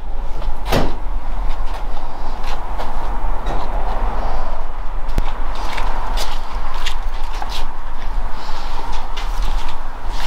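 A van door being tried while it is locked: a sharp knock about a second in, then several smaller latch clicks over a steady rumbling background noise.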